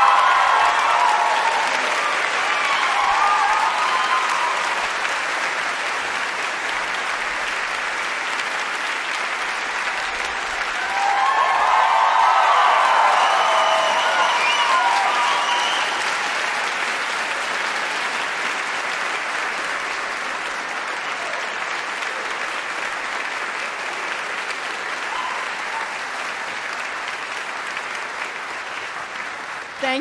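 Concert audience applauding. The applause swells louder about eleven seconds in, then slowly dies away.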